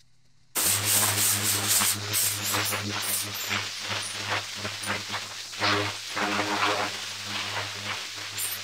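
Dirt being scraped off a buried concrete sidewalk in many quick, irregular strokes over a steady low hum, starting about half a second in.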